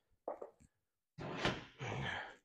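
Helicopter rotor brake being released and the drivetrain handled: a short clunk about a quarter second in, then two brief scraping, rustling noises of metal parts being moved.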